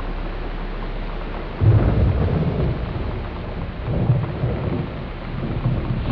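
Thunderstorm recording: steady rain with rolling thunder. One long roll of thunder comes in about a second and a half in and dies away, and a second comes around four seconds in.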